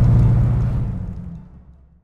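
Engine of a 1979 Clenet Continental Series I running as the open car is driven, a steady low drone that fades out over the last second.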